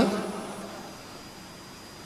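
Pause in a man's amplified speech: his last word dies away in the hall's echo, then only faint steady room hiss with a thin high whine.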